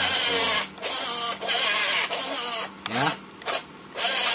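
Electric motors and metal gear drives of a WLtoys 16800 RC excavator whirring in three short bursts as its transmitter sticks are worked.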